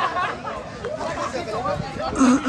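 Chatter of several people talking over one another, with no single clear voice.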